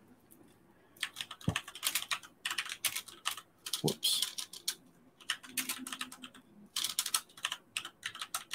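Typing on a computer keyboard: quick runs of keystroke clicks in bursts with short pauses, starting about a second in.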